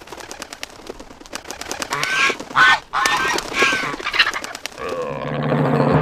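Cartoon seal voices honking and squawking, preceded by a quick run of clicks. About five seconds in, a drawn-out pitched sound with a low hum beneath it swells up.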